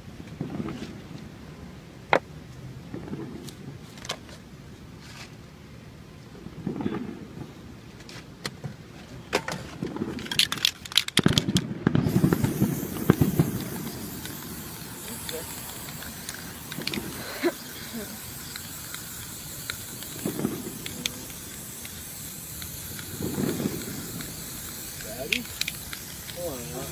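Scattered sharp clicks, then a short burst of rapid crackling about ten seconds in, followed by the steady hiss of an aerosol spray-paint can spraying from about twelve seconds on.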